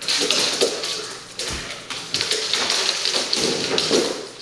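Rapid clicking and scrabbling of dogs' claws on a hard floor, with occasional thumps, as two dogs play-wrestle.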